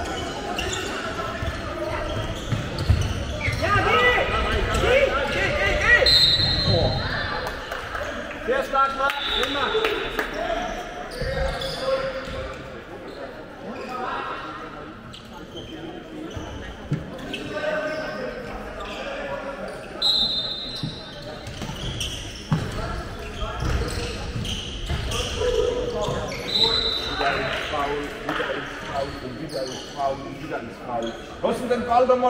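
Handball game sounds echoing in a large sports hall: players calling out to each other, the ball bouncing on the wooden floor, and a few brief high squeaks of sneakers on the parquet.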